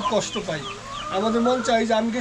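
Desi chickens clucking in a short series of falling calls, with a voice alongside.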